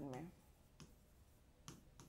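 A spoken word ends, then faint, sharp clicks of a stylus tip tapping a touchscreen whiteboard during handwriting, two of them spaced about a second apart.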